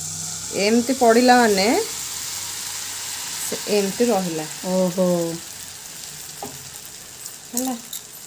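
Pancake batter sizzling in hot melted butter in a nonstick frying pan: a steady high hiss. A voice speaks a few short phrases over it.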